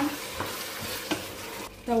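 Chopped vegetables and tomato paste sizzling as they fry in oil in a stainless steel pot, stirred with a long spoon, with a couple of sharper scrapes of the spoon against the pot. The sizzling eases off just before the end.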